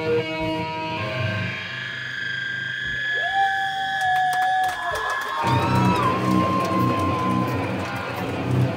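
A band playing loud live music led by electric guitar, with held notes that bend in pitch. About five and a half seconds in the fuller band sound, with drums and bass, comes back in.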